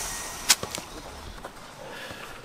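A football kicked once, a sharp loud smack about half a second in, followed by a few lighter ball touches, after a high rushing noise that fades away at the start.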